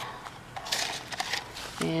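Brief crackly rustling about a second in, from hands working in the bark-chip mulch and soil of a garden bed while planting bean seeds. A woman starts speaking near the end.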